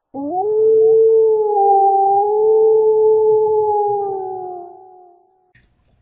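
A single long wolf howl. It rises quickly at the start, holds one steady pitch for about four seconds, then sags slightly and fades away.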